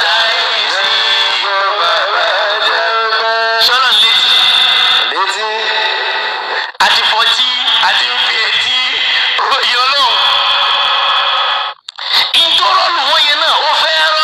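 A voice in a sing-song chant, holding long, sliding notes, broken off abruptly twice, about seven and twelve seconds in.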